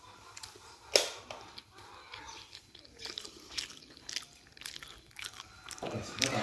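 Quiet eating sounds at a table: soft chewing and small scattered clicks and knocks, with one sharp knock about a second in.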